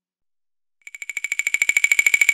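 Silence for most of the first second. Then a high electronic tone fades in, pulsing rapidly, about fourteen times a second, and grows steadily louder: the opening of a bolero song's synthesizer intro.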